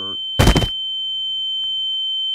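A steady high-pitched electronic beep tone, held without a break, with a fainter lower tone beneath it and one short loud thump about half a second in.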